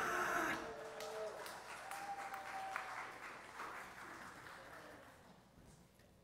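Congregation applauding, with a few voices in the room, the clapping loudest at first and dying away over several seconds.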